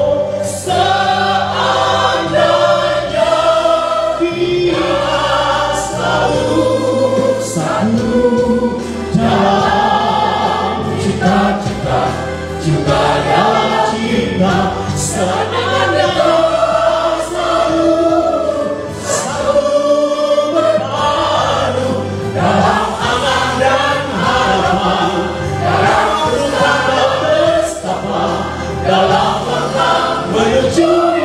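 A man singing a Christian worship song into a microphone, with a congregation singing along and steady musical accompaniment underneath.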